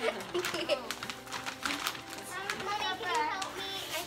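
Children's excited voices, with crinkling and rustling of wrapping paper and packaging as presents are unwrapped.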